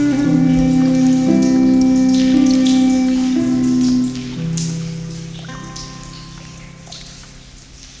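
Native American flute and Celtic harp instrumental music: held chords that stop about halfway through and fade away. Under it runs a nature-sound bed of water dripping like rain.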